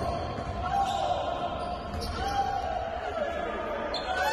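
Live game sound in a basketball gym: a basketball bouncing on the hardwood floor, with voices echoing in the hall.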